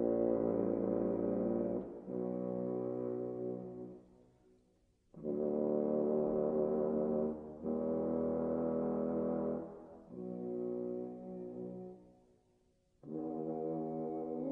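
French horn playing long held notes, each about two seconds, in a classical concerto performance. The notes come in groups and break off into short silences, one near the middle and one shortly before the end.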